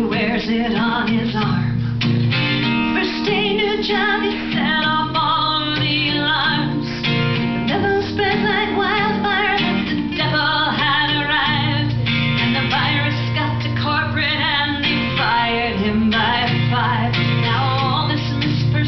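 A woman singing a folk song live over her own strummed acoustic guitar, the guitar chords and voice continuing steadily.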